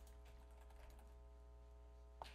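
Near silence: a steady low electrical hum from the meeting-room sound system, with a few faint clicks near the start and about a second in.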